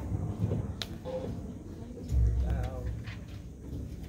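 Indistinct voices and room noise in a large hall before the band starts playing, with a sharp click about a second in and a low thud about two seconds in.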